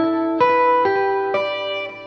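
Clean electric guitar, a Fender Stratocaster, playing single picked notes slowly, one about every half second, each left ringing until the next: notes from an E minor shape laid over an A7 chord to take the line 'outside'.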